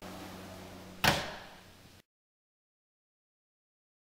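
A door shutting with a single sharp thump about a second in, over a low steady hum; the audio cuts off about a second later.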